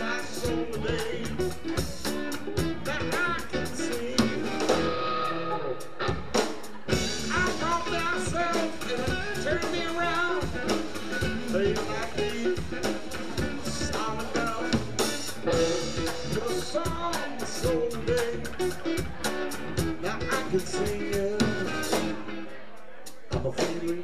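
Live blues-rock band playing: electric guitar, bass and drum kit, with a man singing over the band. Near the end the band drops out briefly, then comes back in.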